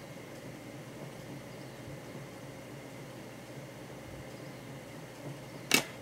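Faint, steady background hiss of room tone, with a short click near the end.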